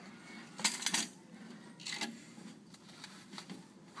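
Short clinking, rattling knocks in two brief clusters about a second apart, from the snake's glass enclosure being handled.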